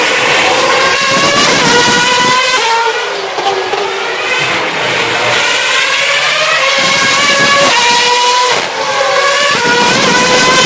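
Formula One cars' 2.4-litre V8 engines running at high revs as they accelerate past, pitch climbing and stepping down at each upshift, loud throughout.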